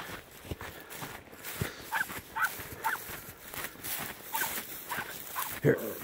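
A dog's faint high yelps, about three short ones together, twice. Under them are faint steps and swishing through dry grass.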